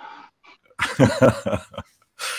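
A man laughing: a breathy exhale, then a second of short, choppy bursts of laughter.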